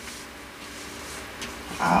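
A faint, low, steady hum from a person's closed-mouth voice, with a soft click about one and a half seconds in, and speech beginning near the end.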